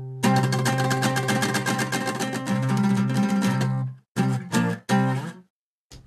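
Acoustic guitar strummed fast and steadily for about four seconds, then three separate strummed chords that ring out briefly and stop: the closing chords of the song.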